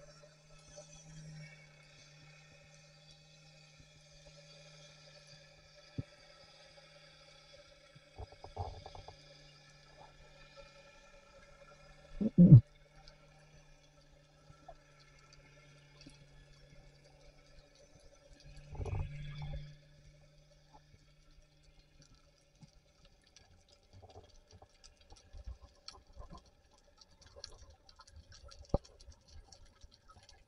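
Underwater sound picked up by a speargun-mounted camera in its housing. A steady hum of several tones fades out about two-thirds of the way through. It is broken by a few dull knocks, the loudest about twelve seconds in, and small scattered clicks follow near the end.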